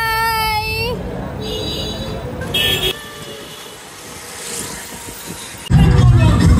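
Street noise with short, high horn toots about one and a half and two and a half seconds in, after a long pitched note at the start that rises and then holds for about a second.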